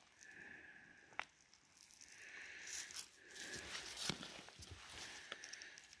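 Faint handling noise: a work-gloved hand turning a rock sample close to the microphone, soft rustling of glove fabric with a sharp click about a second in and another around four seconds.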